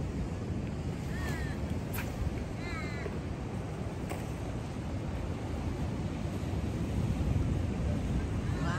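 Steady rumble of ocean surf and wind on the microphone, with a bird's harsh falling calls a little over a second in and again as a run of three or four notes around three seconds in.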